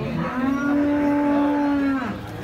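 Cattle mooing: one long call at an almost level pitch, starting about a quarter second in and breaking off near the end.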